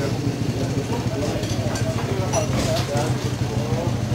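A steady low engine hum with background voices over it, and a few light metallic clicks from a steel tyre lever being worked against a motorcycle wheel rim in the second half.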